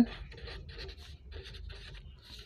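A pen writing on paper, scratching out a handwritten word in a quick run of short strokes.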